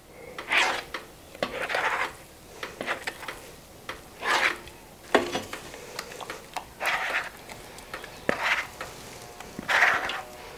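A plastic scraper pushes thick batter through the holes of a perforated plastic spaetzle maker: wet scraping strokes repeated about once a second, with a few sharp clicks between them.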